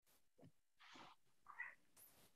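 Near silence on the call audio, broken by a few faint, brief sounds: a soft breath-like hiss about a second in and a short faint sound shortly after.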